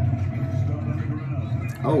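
Football game broadcast audio playing in the room: a steady low rumble of stadium noise with a faint commentator's voice. Near the end a man exclaims "Oh" in reaction to the play.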